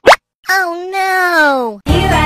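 A quick rising cartoon pop sound effect, then after a short pause a child's voice holding one drawn-out vowel, about a second long, that slides steadily down in pitch.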